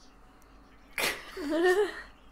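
A woman bursting into laughter about a second in: a sudden sharp snort of breath, then a short wavering giggle.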